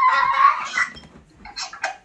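A young child's high-pitched squeal, held and rising slightly, which stops about half a second in. A few short faint noises follow.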